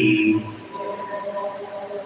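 Group singing of a hymn: a loud held sung note ends about half a second in, followed by softer sustained singing.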